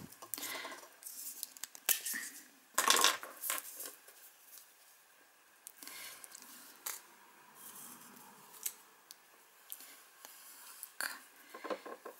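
A marker pen being handled and uncapped, with a few sharp clicks and rustles in the first three seconds, then a felt-tip permanent marker drawing on stiff card in soft, scratchy strokes.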